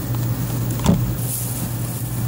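Outdoor air-conditioner condenser unit running with a steady low hum, with one short knock about a second in.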